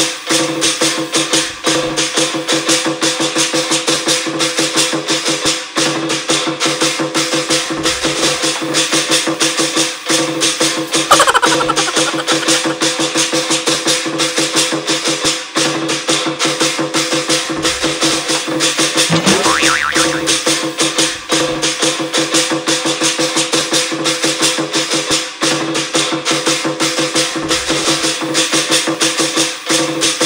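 Chinese lion dance music: fast, continuous percussion of clashing cymbals and drum with steady held tones underneath.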